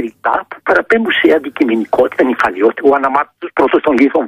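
Speech only: a man talking continuously in Greek, the voice thin and cut off above the treble like a phone line on a radio broadcast.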